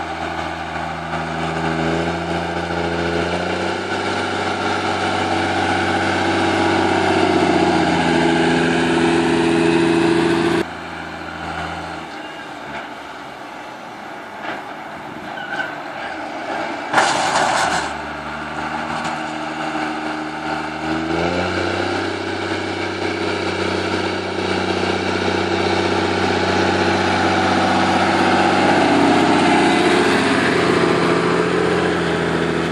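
Diesel engine of a G240 tractor working with a silage push blade, running loud and steady with its pitch dropping and rising as the load changes. About ten seconds in the sound drops abruptly to a quieter stretch, broken by a sharp knock, before the engine comes back strong and rises again near the end.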